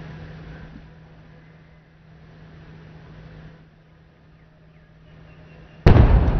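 Faint open-air ambience with a steady low hum, then near the end a single sudden loud boom, like a round of a ceremonial artillery gun salute, which rings on in echo.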